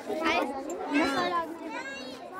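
Children's voices chattering and calling out close by in a crowd, high-pitched and overlapping.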